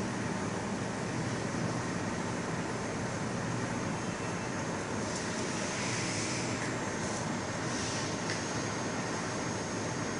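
Mini UV flatbed phone-case printer running near the end of a print, a steady even machine noise with a few faint brief hisses partway through.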